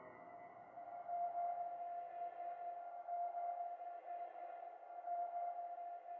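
Quiet ambient background music: one held note with faint overtones, swelling and easing roughly once a second.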